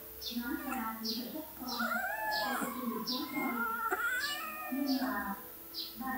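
A domestic cat meowing twice, two long drawn-out calls that rise and fall in pitch, about two seconds in and again about four seconds in.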